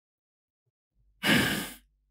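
Near silence, then a single sigh a little over a second in, breathy and fading out over about half a second.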